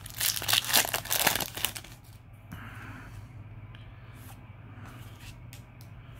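A foil Yu-Gi-Oh! booster pack is torn open and crinkled, a loud crackling tear for about the first two seconds. Then it goes quieter, with a few faint ticks.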